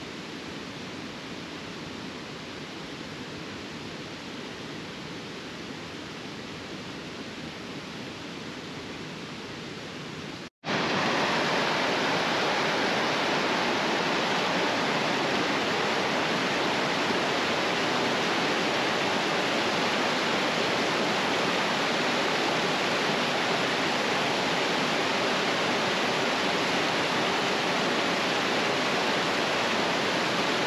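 Steady rush of water. It is softer at first, then cuts out briefly about a third of the way in and returns much louder: a mountain creek cascading over boulders and logs, heard close up.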